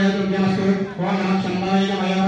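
Devotional chanting on a steady, held note, with a brief break about halfway through.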